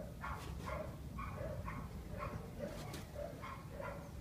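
A dog barking over and over in short, even barks, about two a second, over a steady low rumble.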